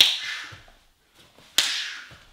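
Two sharp snaps about a second and a half apart, each trailing off in a brief hiss: cotton gi pants cracking at the snap of kicks thrown from a squat.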